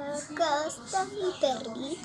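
A young girl singing a few short, wordless notes.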